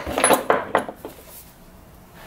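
Clinks and knocks of tools and small metal parts being moved about on a wooden workbench, several in quick succession in the first second.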